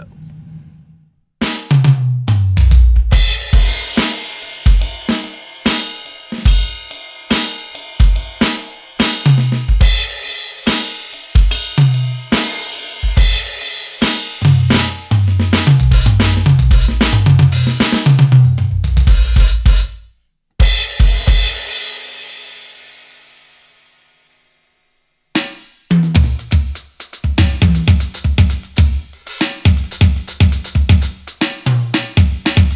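Roland TD-1KV electronic drum kit playing its sampled drum sounds: a busy groove of kick, snare and cymbals that starts about a second and a half in. Around twenty seconds in the playing stops on a cymbal that rings out over a few seconds, followed by a short silence. The groove then starts again.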